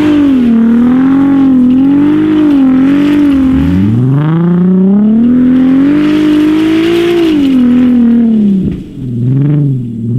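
Volkswagen Mk4 R32's 3.2-litre VR6 engine revving hard as the lifted car spins its wheels and slides in circles on grass. The revs waver high, drop sharply about three and a half seconds in and climb back up, fall away near the end, and give one short blip just before the end.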